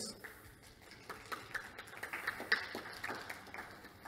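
Sparse applause from a small audience: a few people clapping in an irregular patter that thins out near the end.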